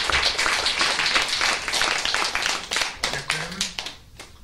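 Audience applauding in a room: dense clapping that thins to a few scattered claps near the end.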